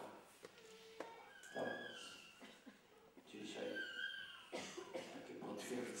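An elderly man speaking slowly and softly into a microphone, in short phrases with pauses between them.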